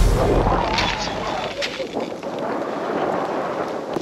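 Wind rumbling and buffeting on the microphone, with a few short crunches of boots in hard snow.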